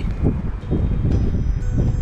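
Wind buffeting the microphone in uneven gusts, with faint, thin ringing chime tones coming in about a second in and again shortly after.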